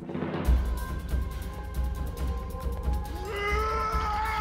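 Soundtrack music starts suddenly with a steady pounding beat. About three seconds in, a long wailing note rises in over it and is held.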